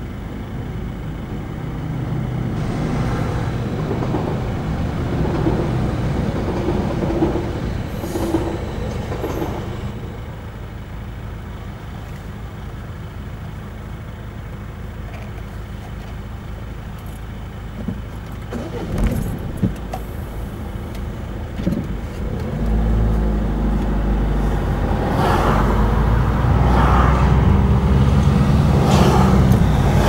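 Car engines idling at a railway level crossing, with a few knocks near the middle. From about two-thirds of the way through, a deep engine rumble comes in and grows louder as the car moves off and drives over the crossing.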